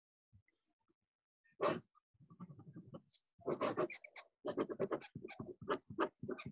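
Rapid, breathy panting in short quick runs, after a near-silent start and a single huff about a second and a half in. The runs grow busier from about three and a half seconds on.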